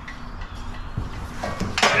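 Handling noise from a JuiceBox 40 EV charger and its wall bracket: a few light knocks and rubbing as the unit is turned over and lifted.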